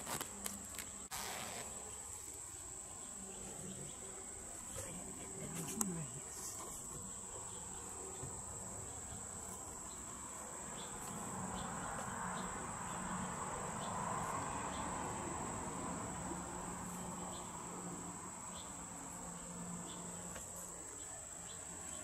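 A steady high-pitched insect trill, with brief rustles and zipper sounds from the nylon mesh of a butterfly cage being opened and handled in the first seconds and again around six seconds in.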